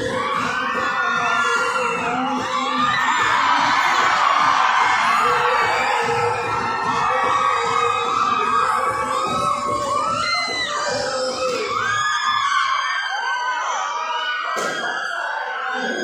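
Loud dance music with a steady beat, with an audience shouting and whooping over it. About twelve seconds in the bass beat drops out, leaving mostly the crowd's shouts.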